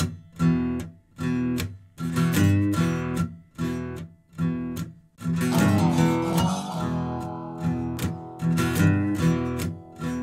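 Instrumental song intro on acoustic guitar: chords strummed in a steady rhythm, about two a second, with short breaks between them. About halfway through, the playing runs on without breaks and a sliding melodic line joins.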